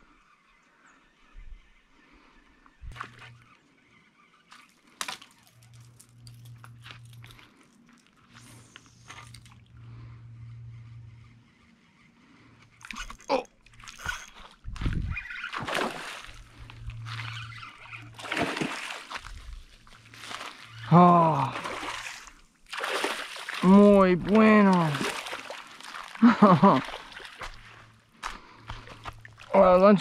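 A hooked fish thrashing and splashing at the water's surface as it is fought in to the bank. After a quiet start, the splashes come repeatedly from about halfway in, mixed with short wordless shouts from the angler.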